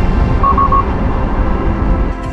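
Steady low rumble of a car on the road under background music, with three quick high electronic beeps about half a second in.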